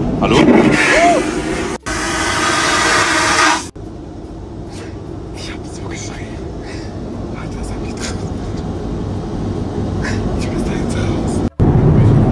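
Airliner vacuum toilet flushing a bowl stuffed with toilet paper: a loud rushing whoosh about two seconds long that starts and stops abruptly, followed by the steady low drone of the aircraft cabin.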